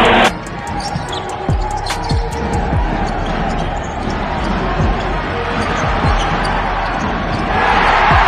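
A loud crowd roar cuts off abruptly at an edit just after the start. Then a basketball bounces on a hardwood court about ten times at uneven spacing, over steady arena crowd noise.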